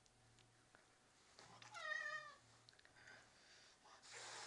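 A domestic cat, held on its back and play-wrestled, gives one short meow about halfway through, falling slightly in pitch.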